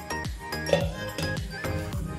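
Background music with a steady beat. About three-quarters of a second in, a single sharp metallic clink as a stainless-steel mixer jar knocks against a steel bowl while batter is poured out.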